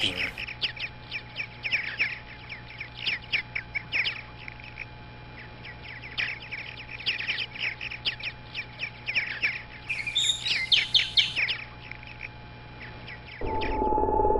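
Small songbirds chirping in quick runs of short, high notes, over a steady low background hum that grows louder near the end.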